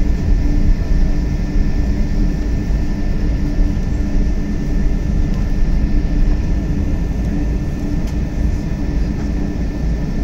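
Steady low rumble inside the cabin of a Boeing 777 taxiing, its twin jet engines at low taxi power, with a thin steady whine above the rumble.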